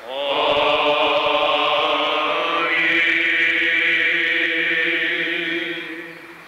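Greek Orthodox Byzantine chant: one long drawn-out chanted phrase held on a nearly steady pitch. It glides up into the note at the start and fades out near the end.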